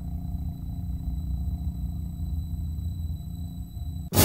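A low, steady rumbling drone with faint, thin, high steady tones above it.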